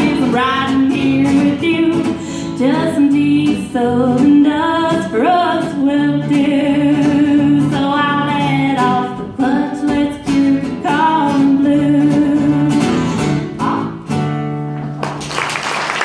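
A woman singing a country song, accompanying herself on a strummed acoustic guitar.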